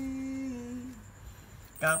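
A voice holding one long sung or hummed note that ends about a second in; another voice starts near the end.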